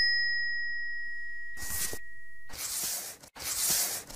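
Subscribe-animation sound effects: a bright bell ding that fades away over about two and a half seconds, followed by three short whooshing swishes.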